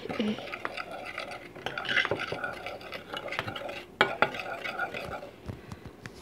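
Metal spoon stirring a dry mix of crushed Goldfish crackers, flour and garlic powder in a bowl, scraping and clinking irregularly against the side, with one sharper clink about four seconds in.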